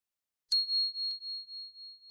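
Notification-bell sound effect from a subscribe animation: a single high, pure ding about half a second in that rings on and fades in slow pulses, with a faint click partway through.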